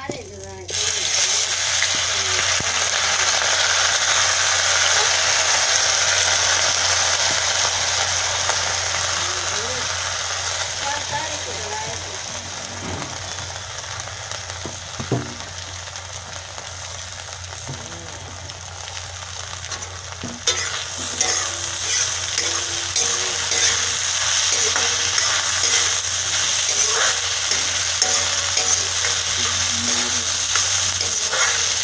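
Cracked wheat (daliya) sizzling and frying as it is poured into hot oil in a steel kadhai and stirred with a steel ladle. The sizzle starts suddenly about a second in, eases off through the middle and grows louder again from about two-thirds of the way through.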